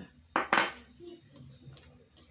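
Two quick clinks of crockery knocking against a glass mixing bowl, close together about half a second in.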